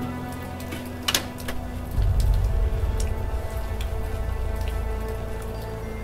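Ominous film score: held tones, two sharp clicks about a second in, then a deep low rumble that comes in suddenly about two seconds in and carries on under scattered faint ticks.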